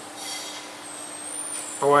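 A pause in a man's speech filled by a steady low hum and faint background noise, with a faint high tone late in the pause; his voice resumes near the end.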